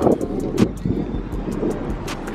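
Wind rumbling on the microphone of a handheld camera being walked outdoors, with a couple of short knocks about half a second in and near the end.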